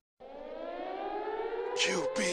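A siren wail that starts abruptly after a brief silence and rises slowly in pitch while growing louder, with a noisy whoosh near the end.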